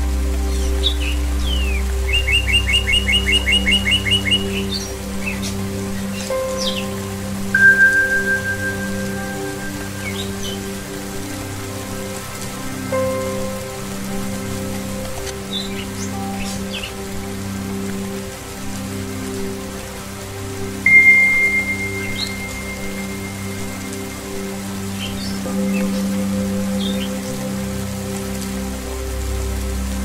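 Slow relaxation music of low sustained drone tones over steady rain, with birds chirping: one fast trill and scattered single chirps. Twice a struck singing-bowl tone rings out and slowly fades.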